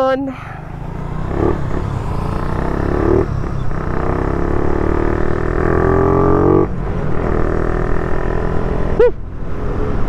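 Motorcycle engine accelerating while riding, its pitch climbing steadily with a brief break about three seconds in, then easing off about seven seconds in.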